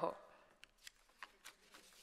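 Faint rustling and a few soft ticks of paper being handled at a lectern microphone, as the last spoken word fades.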